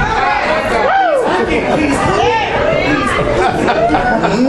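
Speech only: a man preaching loudly into a hand-held microphone in a large hall, with other voices in the room.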